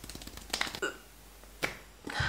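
A woman's stifled laughter with her hands pressed over her face: a quick run of small clicks, two short muffled laugh sounds, and a sharp click near the end.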